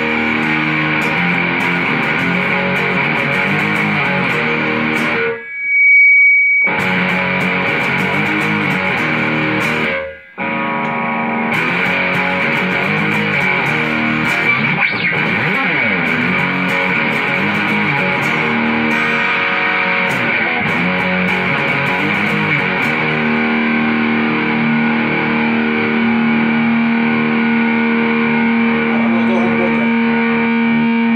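Custom electric guitar played with distortion through a Mesa/Boogie combo amp, continuous riffing and chords. About five seconds in the playing breaks off briefly under a single loud high-pitched tone, and in the last few seconds notes are held and left to ring.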